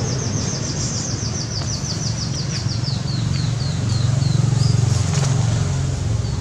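A bird's rapid trill of short high chirps that slows and falls in pitch, fading out about three and a half seconds in, then a few scattered chirps. Under it runs a steady low motor rumble that swells around four to five seconds in.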